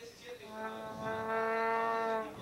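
A horn sounding one long, steady note that starts about half a second in and holds at an even pitch.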